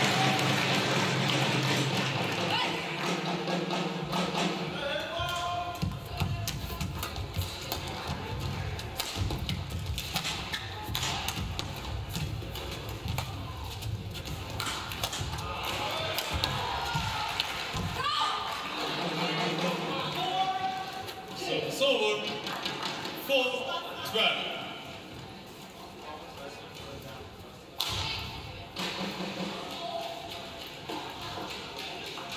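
Badminton rally in an indoor arena: shuttlecock hits as sharp taps and court shoes squeaking on the floor, with music and voices from the hall in between points.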